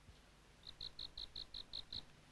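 A cricket chirping faintly, a regular high-pitched pulse of about five chirps a second that begins a little over half a second in.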